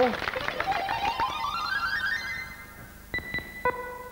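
Electronic game-show sound effect: a quick rising run of synthesized notes, then three short pinging tones about three seconds in as the chosen letter appears on the puzzle board.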